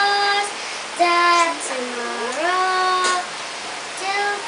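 A young girl singing solo, without accompaniment, in a few long held notes; the last note slides up and is held for most of a second.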